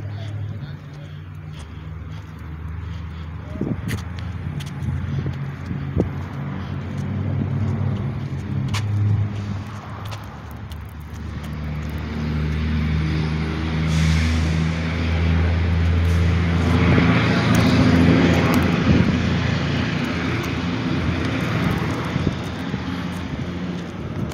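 A motor vehicle engine hums steadily, growing louder to a peak about two-thirds of the way through as a vehicle passes close by, then easing off. A few sharp clicks sound early on.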